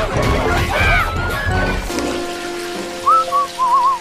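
A loud jumble of cartoon sound effects dies away. From about three seconds in, a person whistles a light, warbling tune over soft background music.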